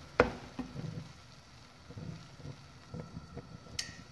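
A wooden spatula stirring and scraping thick, finished semolina halwa in a nonstick pan: a sharp knock against the pan just after the start, then a few soft scrapes and ticks.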